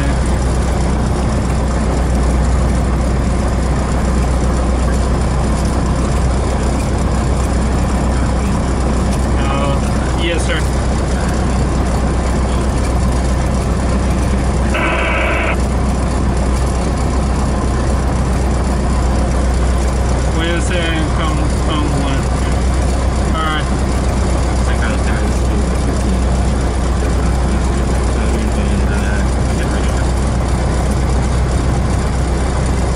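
Cessna 172's engine and propeller idling steadily, heard from inside the cabin as an even low drone, with a few brief snatches of radio speech over it.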